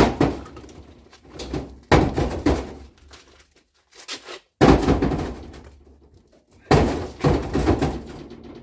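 Chunks of broken concrete and old paving stones thrown into a metal car trailer's bed, each landing with a loud crash and rattle, roughly every two seconds.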